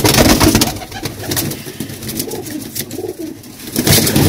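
Domestic pigeons cooing steadily in a loft, with scattered short clicks over the top.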